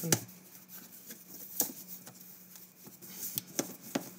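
Flaps of a cardboard shipping box being pulled open and folded back by hand: scattered sharp cardboard snaps and soft rustles, the loudest right at the start and a few more spaced through.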